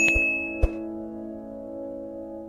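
Soft background music: a held keyboard chord with a bell-like ding struck at the start that fades away within about a second, the chord dying down slowly, with two short clicks in the first second.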